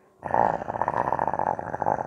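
A person growling in a rough, buzzing voice to give a glove-puppet bug character its sound. It is one continuous growl of a little under two seconds, starting a moment in.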